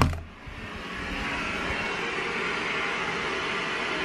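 A doorknob latch clicks sharply as a bedroom door is pushed open, then a steady rushing hiss of a white-noise machine swells in over the first second and holds level.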